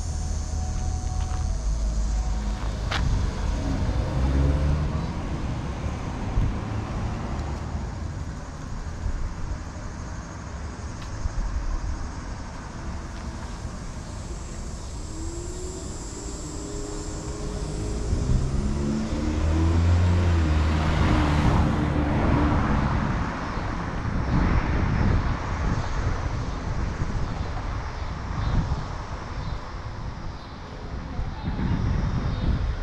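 Urban street ambience with a steady low rumble of wind on the microphone. About two-thirds of the way through, a car drives past, its engine pitch rising and falling and its tyre noise swelling, then fading.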